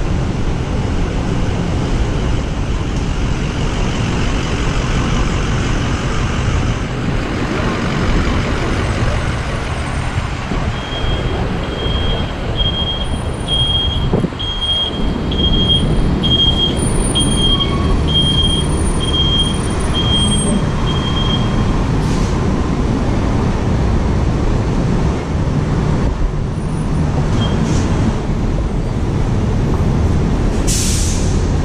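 City street traffic: a steady rumble of engines and passing vehicles. From a little after ten seconds in to just past twenty seconds, a run of high, evenly spaced beeps sounds about one and a half times a second.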